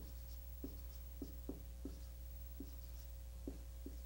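Faint marker strokes on a whiteboard as a word is written: about nine short, separate strokes.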